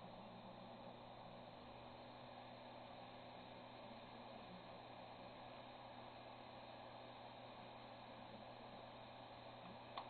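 Near silence: the faint steady hum and hiss of a running hard drive with its platters spinning, and no seek clicks.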